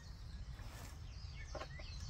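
Small forest birds chirping in short, pitch-bending calls over a steady low outdoor rumble. A brief knock of camping coffee gear being handled comes about one and a half seconds in.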